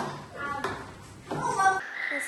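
Young children's voices, short calls and chatter, in a room.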